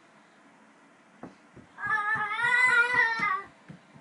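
A toddler's drawn-out, wavering voiced cry for about a second and a half, starting near the middle, over a run of soft low thumps.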